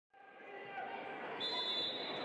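Basketball-gym ambience fading in: indistinct voices in the hall, with a steady high tone joining about one and a half seconds in.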